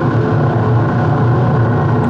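A dense, steady electronic drone: a low hum layered with many sustained tones, holding an even level throughout with no beat and no sudden events.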